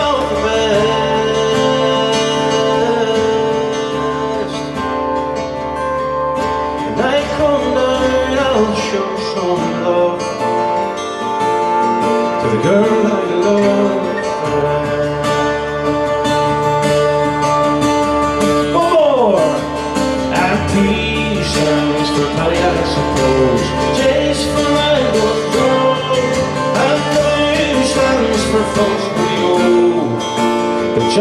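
Two acoustic guitars playing a folk song together, strummed and picked in a steady rhythm, with a man's voice singing at times over them.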